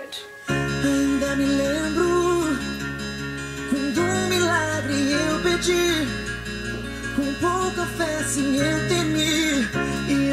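A man singing in Portuguese in long, gliding notes over sustained instrumental accompaniment, starting about half a second in.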